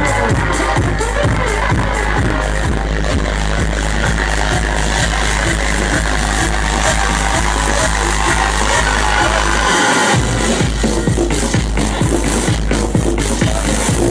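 Loud electronic dance music over a club sound system: a steady four-on-the-floor kick drum over a heavy bass line. The bass cuts out briefly about ten seconds in, then the beat comes back in.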